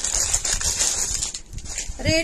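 Clear plastic saree wrapper crinkling and rustling as it is handled and the folded saree is pulled out, an uneven run of crackles that fades somewhat near the end.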